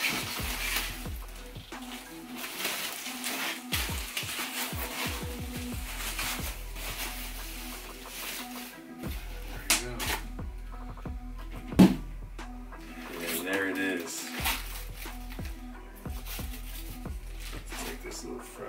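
Background music under the rustling and crinkling of foam packing sheets and a cardboard box being handled, with scattered clicks and a sharp knock about twelve seconds in.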